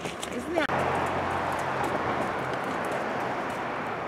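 Horse hooves clopping on pavement in a few sharp clicks, then, after a sudden break under a second in, a steady low rumbling background noise with faint scattered clops.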